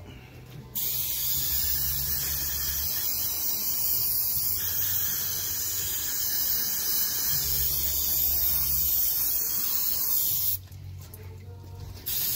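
Aerosol can of CRC QD electronic cleaner spraying in one long, steady hiss onto a hydraulic pump motor's armature, flushing out oil contamination. The hiss starts just under a second in and stops about a second and a half before the end.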